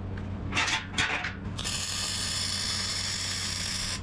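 Brief metal clatter as the hinge and clamp are handled, then about one and a half seconds in, a MIG welding arc strikes and runs with a steady crackling hiss for about two and a half seconds, welding a steel hinge barrel onto a square steel tube.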